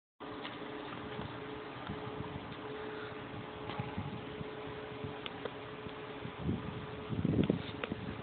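Steady mechanical hum with a faint constant tone and a few light clicks. Two brief low rumbles come near the end.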